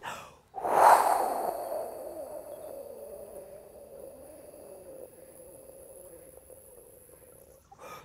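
A woman's long, slow exhale through pursed lips, starting strongly about half a second in and fading away over several seconds. It is a deliberate breathing-out exercise: she empties her lungs for as long as possible to calm stress.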